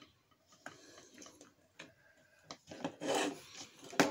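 Hard plastic toy parts clicking and rubbing against each other as they are fitted together, with a louder scraping rub about three seconds in.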